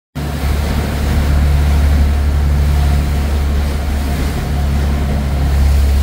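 A tour boat's engine drones steadily with a few constant low tones, under an even rush of wind and water.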